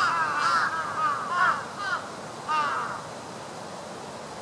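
A bird calling over and over, a run of short calls about two a second that stops a little before three seconds in.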